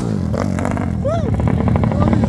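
Single-cylinder four-stroke motorcycle engine, bored to 70 mm for over 300 cc, running as the bike rides around the roundabout. A sharp click comes right at the start, the engine's pitch falls over about half a second, and then it runs on at a steady note.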